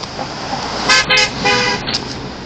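A car horn sounds three times in quick succession, two short toots and then a slightly longer one, over the hiss of passing traffic.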